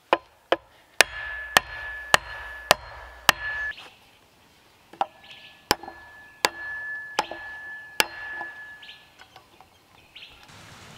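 Back of an axe head striking the top of a wooden post, driving it down into a log: sharp wooden blows about one and a half a second, seven in a row, a short pause, then five more.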